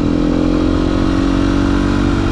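Dirt bike engine running steadily at a constant road speed while being ridden, with no change in revs.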